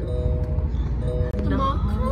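Low, steady road rumble inside a car cabin with music playing; voices start singing along about one and a half seconds in.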